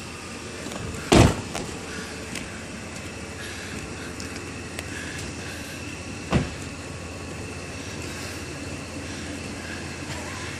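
Two car doors slamming shut, one about a second in and another about six seconds in, over steady background noise.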